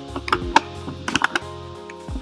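Computer keyboard keys clicking, a few single presses and then a quick cluster about a second in, over steady background music.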